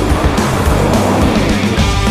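Rock music with the sound of a pickup truck's engine and tyres on loose dirt mixed over it, swelling up and dying away across the middle second.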